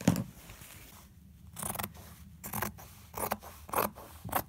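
Fabric scissors cutting through heavy cotton canvas, four short snips about two-thirds of a second apart in the second half. At the very start, a soft thump and rustle of the canvas being moved.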